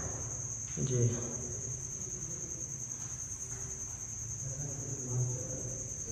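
Steady high-pitched trill of an insect, with a low hum underneath and a man's short word about a second in.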